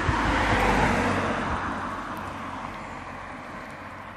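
A car passing on the road: a steady rush of tyre and engine noise that is loudest about a second in and then fades away.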